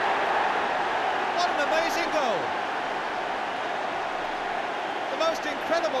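Football stadium crowd cheering a goal, a steady mass of voices that slowly dies down.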